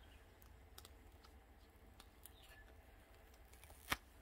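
Faint scattered clicks and handling sounds as a silicone mold is peeled off a cured resin coaster, with one sharper click near the end as the coaster pops free.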